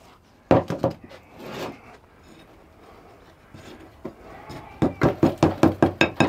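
A steel rod knocking into a sand casting mould on a metal bench as the mould is broken up to free a bronze casting: a few knocks about half a second in, then a fast run of sharp knocks, about five a second, from about five seconds in.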